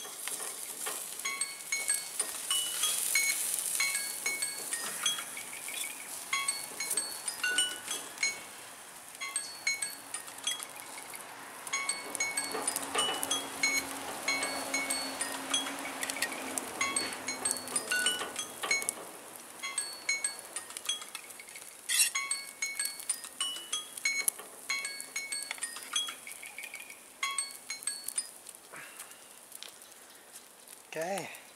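A metal spatula clicking and scraping against a wire-mesh grill grid and a plate as cooked fish fillets are lifted off, with many sharp clicks, the loudest about 22 seconds in. Behind it runs background music of short, bell-like notes.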